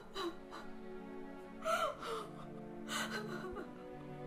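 A woman sobbing in three bursts of gasping, falling cries over soft, sustained background music.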